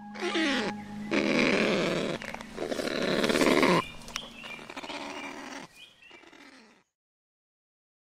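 An animal's harsh, noisy calls: three long bursts, then two weaker ones, stopping about seven seconds in.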